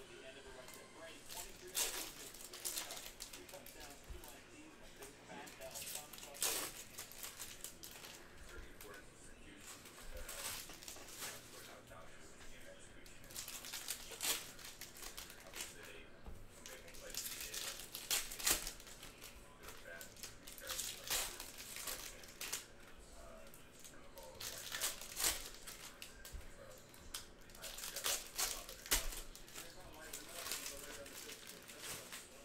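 Foil trading-card pack wrappers crinkling and tearing open in irregular bursts, with cards being handled and shuffled between them.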